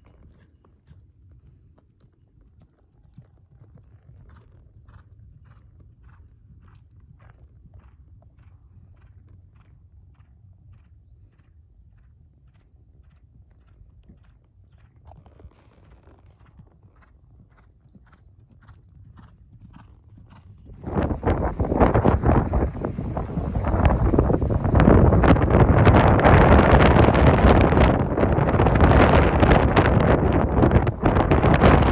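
Horse's hooves clip-clopping on soft arena dirt, about two beats a second, heard from the saddle. About two-thirds of the way in, loud wind buffeting the microphone suddenly takes over.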